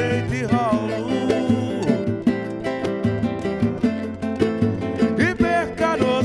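Live samba: a nylon-string acoustic guitar strummed, with percussion keeping a steady beat, and a man's voice singing at the start and again near the end.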